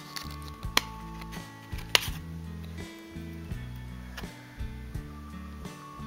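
Background music with steady, changing low notes, broken by two sharp clicks, about a second apart in the first two seconds, from hands handling trading cards and their plastic blister packaging.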